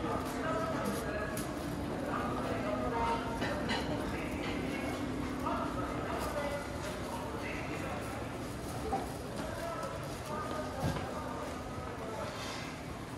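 Arcade ambience: footsteps clicking on a tiled walkway amid the indistinct chatter of passers-by under a covered shopping-street roof.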